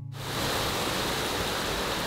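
Heavy downpour of rain falling on the street, a steady dense hiss that comes in suddenly just after the start as the last low note of music dies away.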